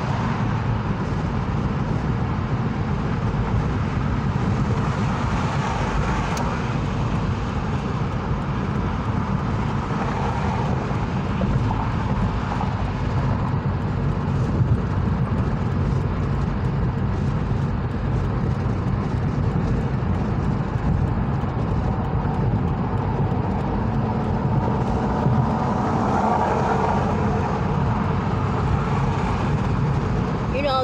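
Steady road and engine noise inside a car's cabin while it travels at freeway speed.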